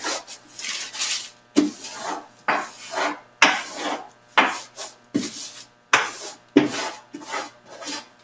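A hand rubbing and smoothing a sheet of wax paper pressed onto wet clear gesso on a canvas: a series of irregular scraping, crinkling strokes, about one or two a second, with one sharp click a little past three seconds in.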